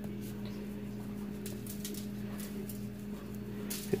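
Plastic seasoning shaker bottle shaken over raw ground meat: a few faint, irregular rattles and taps of rub granules, with a louder one near the end, over a steady low hum.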